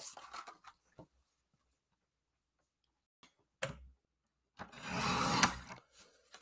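Paper trimmer cutting a thin strip off a layer of card stock: a short click, then about a second of scraping as the blade slides along the rail near the end.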